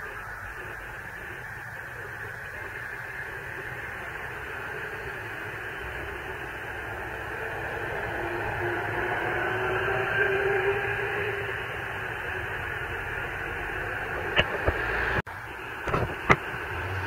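Thin, hissy street noise of vehicles moving through traffic, growing louder through the middle, with a few sharp knocks near the end.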